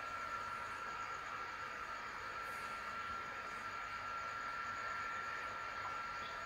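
Faint background hiss with a thin, steady high-pitched whine; no speech.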